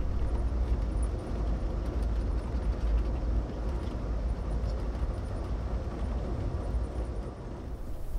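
Steady rumble and rushing of the Amtrak Southwest Chief passenger train running along the track, heard from inside a coach car.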